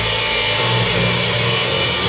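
Heavy metal band playing live in an arena, recorded from the crowd: distorted electric guitars holding low sustained chords over a full band mix.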